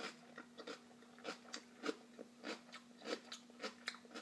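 A person chewing a mouthful of crunchy raw cabbage salad with the mouth near the microphone: a run of faint, irregular crisp crunches, two or three a second.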